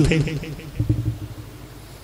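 A man's voice ends a spoken word, then a pause holding only a faint low rumble of background noise.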